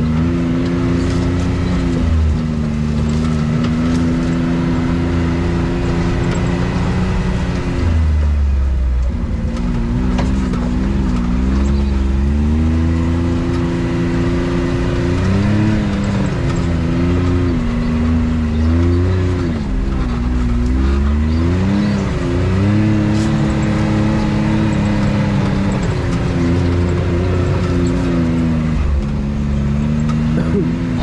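Can-Am Maverick X3 UTV's three-cylinder turbo engine running under way, its revs rising and falling with the throttle. It drops off about a quarter of the way in, and there are several quick revs up and down past the middle.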